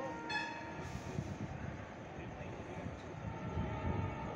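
Low rumble of a train out of sight, with a brief high horn-like tone about a third of a second in.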